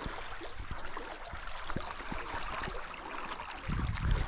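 Flowing stream water, a steady even hiss, with a few faint clicks and a low thump near the end.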